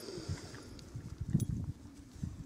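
Faint outdoor ambience: a low, uneven rumble of wind on a handheld camera's microphone, with a few soft handling bumps and a couple of short clicks about a second and a half in.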